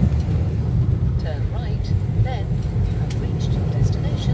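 Car interior noise while driving at low speed: a steady low engine and road rumble with no change in pace.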